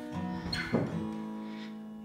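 Acoustic guitar played live, soft plucked notes ringing and slowly fading, with a new chord struck less than a second in.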